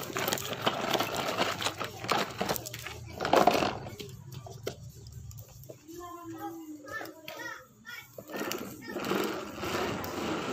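A small child's voice babbling and calling out, with no clear words. For the first half a steady low hum of a small motor runs underneath and then stops.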